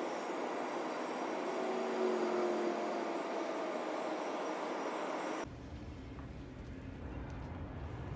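Steady rushing of a fast, high river, with a faint hum through it. About five and a half seconds in it cuts off abruptly to a quieter low rumble.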